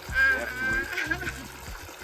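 A man's laugh with a high, wavering pitch, lasting about a second from the start, over the steady trickle of water from an above-ground pool's return jet.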